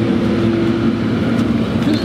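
Classic Porsche 911's air-cooled flat-six idling, a steady low hum, heard inside the car with the passenger door open.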